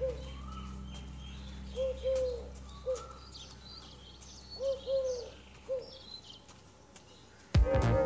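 A dove cooing in repeated three-note phrases, two notes close together and a third after a short pause, with small birds chirping higher up. A steady low hum fades away, and loud music starts suddenly near the end.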